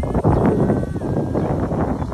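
Wind buffeting a phone's microphone: a rough, uneven rumble.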